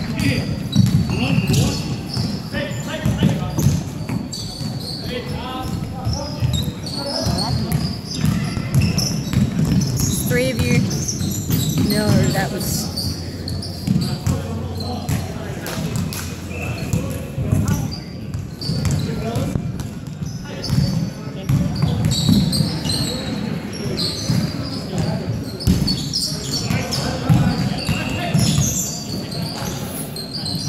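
Indoor basketball game: a ball bouncing on a wooden court, with players' footfalls and indistinct calls in a large gym.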